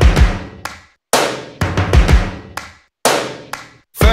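Music: heavy, booming drum hits in three short clusters split by brief silences, each hit ringing out and fading.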